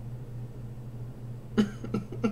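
A low steady hum, then near the end a man breaks into laughter: a loud first burst followed by short, evenly spaced 'ha' pulses, each falling in pitch.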